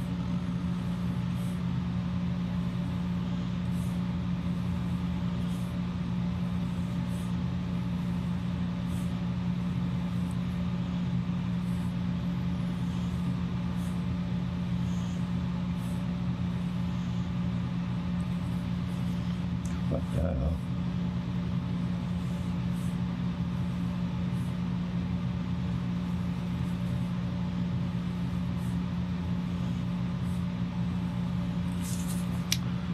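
A steady low hum, like a motor or fan running, at an even level throughout. Faint short scratches of a pen drawing on paper come every second or two, and there is a single soft knock about twenty seconds in.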